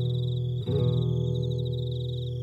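Acoustic guitar playing slow, ringing chords, with a new chord struck about two-thirds of a second in, over a steady high trill of crickets.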